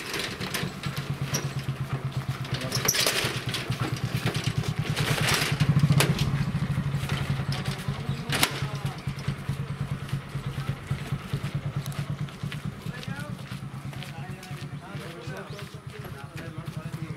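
A vehicle engine idling, a steady low throbbing that runs throughout, with several sharp knocks over it; the loudest knocks come about six and eight and a half seconds in.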